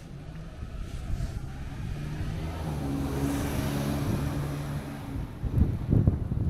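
A motor vehicle passing close by: its engine hum and tyre noise swell over a few seconds and fade near the end. Wind is buffeting the microphone.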